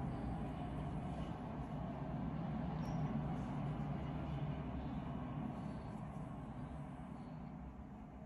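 Steady low background rumble that slowly fades toward the end.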